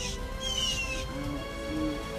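Blue jays giving harsh falling alarm calls, two of them around the middle, against steady background music. The calls are a hawk alert.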